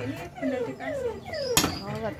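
Claw machine's electronic sound effects: a run of short falling tones, with a sharp click about one and a half seconds in.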